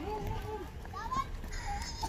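Children's voices calling out, high-pitched and without clear words, with a few short rising calls, over a steady low outdoor rumble.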